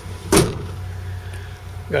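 A motor vehicle engine idling with a steady low hum, with one short sharp click about a third of a second in.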